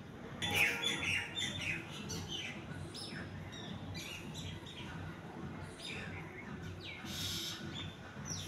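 Small birds chirping: a run of short, quick chirps and falling notes that starts about half a second in and keeps going.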